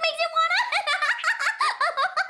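A cartoon pony's high-pitched voice giggling in quick, repeated bursts.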